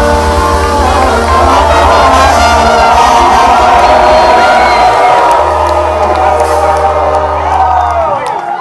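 Loud live band music with a crowd cheering and whooping over it; the music cuts off near the end.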